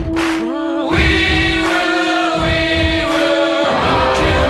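Background music: a choir-like sung passage with long held notes.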